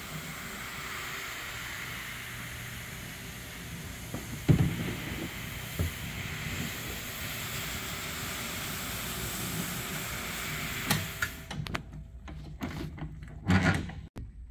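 Rotary floor machine running steadily, its shampoo brush scrubbing a wet area rug, with a knock about four seconds in. It shuts off about eleven seconds in, followed by a few knocks and clunks.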